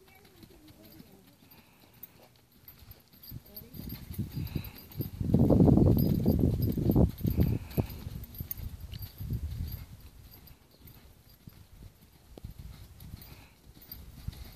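A horse cantering on sand footing: a run of soft, rapid hoofbeats, loudest around the middle and fading afterwards.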